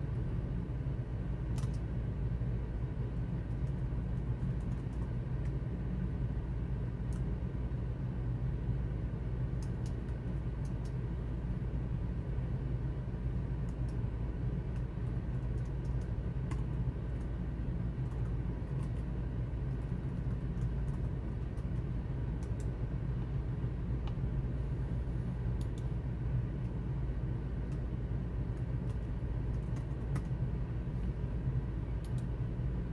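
Faint, irregular keystrokes on a computer keyboard as a line of text is typed, over a steady low hum.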